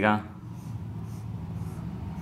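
Marker pen scratching on a white board in a series of short drawing strokes, about two a second, over a steady low hum.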